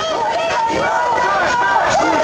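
Crowd of demonstrators shouting together, many voices overlapping with no one voice standing out.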